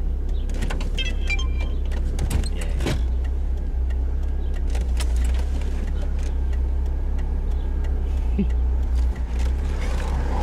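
Steady low rumble heard from inside a stopped car, its engine idling, with a few faint clicks in the first few seconds.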